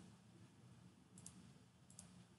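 Near silence with three faint computer mouse clicks, each a quick double tick: one near the start, one a little past halfway and one at the end.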